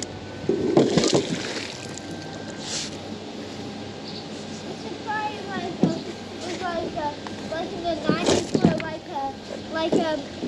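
A fishing magnet splashing into a river about a second in, then the wet rope hauled back in by hand with water sloshing and dripping.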